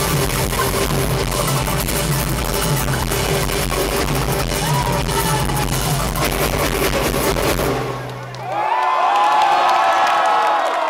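Live roots band of accordion, fiddle, acoustic guitar, mandolin, double bass and drums playing loudly on a held final chord, which cuts off about eight seconds in. The crowd then cheers, whooping and whistling.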